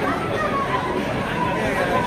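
Steady chatter of passers-by on a crowded street: several voices talking over one another.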